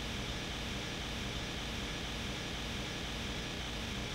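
Steady, even background hiss with a low hum underneath, with no distinct events: room tone.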